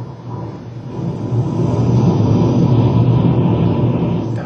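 Loud low rumbling drone with a faint steady high tone above it, dipping briefly about half a second in and then swelling again.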